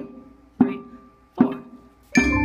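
Single notes struck on a pitched instrument, the same note twice about 0.8 s apart, each ringing and fading: the teacher's four-beat lead-in played before the class answers.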